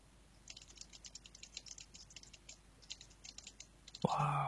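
Faint, rapid typing on a computer keyboard, starting about half a second in.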